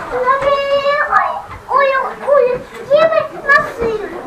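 A young child's high-pitched voice: one long held call, then several shorter calls that rise and fall in pitch.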